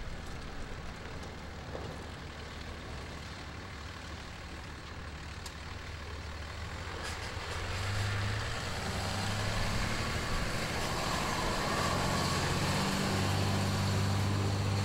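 Pickup truck towing a large dump trailer drives past, its engine note coming in about halfway through and growing louder as it approaches. The first half holds only a faint outdoor hum.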